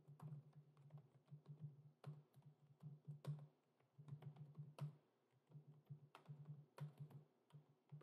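Faint typing on a computer keyboard: irregular key clicks in quick runs with short pauses.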